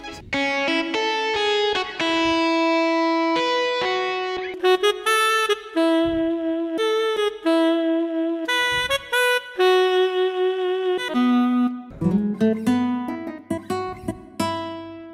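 Yamaha arranger keyboard playing a slow melody of held notes in a demonstration tone, with lower notes joining near the end.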